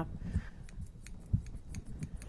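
Grooming scissors snipping a poodle's tail hair in a quick run of short, crisp snips, with one soft thump a little past halfway.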